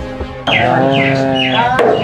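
Background music for a comedy scene. About half a second in, a low, tense music bed cuts to a brighter phrase built on a long held note with short repeated figures above it.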